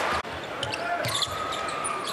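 A basketball being dribbled on a hardwood arena court, with short high sneaker squeaks over steady crowd noise.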